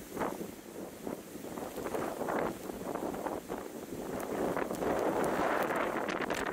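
Storm surf breaking and churning against a stone harbour wall in strong wind: a continuous rush of water and wind noise that surges with each wave and swells louder near the end.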